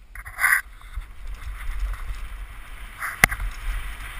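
Downhill mountain bike rolling onto a dirt trail, with tyre rumble and wind on the helmet camera's microphone building as it gathers speed. There is a short loud burst about half a second in, and a single sharp knock from the bike about three seconds in.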